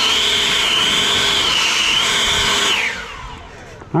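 EGO Power+ 650 CFM battery leaf blower running at full speed, a steady high fan whine over rushing air, wavering slightly in pitch. About three seconds in it is let off and the whine falls away as the fan spins down.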